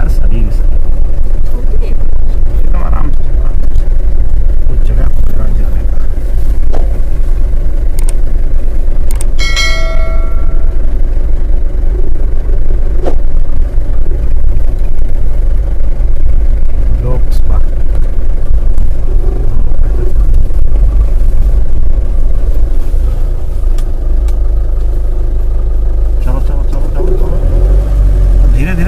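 Steady, loud low rumble of a car's cabin from the engine and road while the car creeps along slowly, with people's low voices inside. About ten seconds in, a brief tone lasting about a second.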